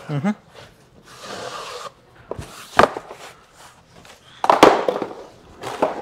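Cardboard and plastic packing being handled while a washing-machine tub is unpacked from its carton: rustling and scraping of cardboard, a sharp knock a little before the middle, and a louder crackling rustle about three-quarters of the way through.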